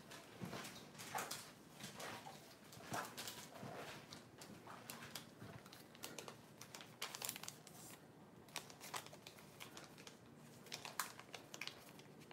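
Faint crinkling and rustling of paper being handled, with scattered light clicks and taps.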